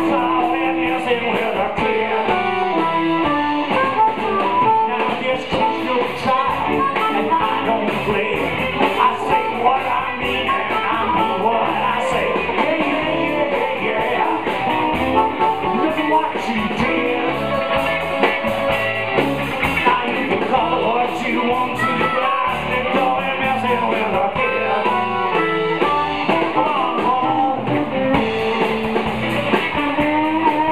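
Live electric blues band playing: electric guitars, bass and drum kit, with amplified blues harmonica.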